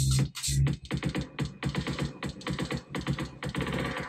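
Electronic dance track played through a Pioneer DDJ-FLX4 with its "Twister" Smart CFX effect engaged. About a second in, the beat breaks into rapid stuttering repeats.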